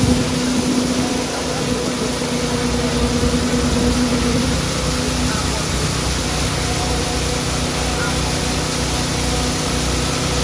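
Hydraulic excavator's diesel engine running as it tips a bucket of wet concrete, with a steady hum that drops away about halfway through.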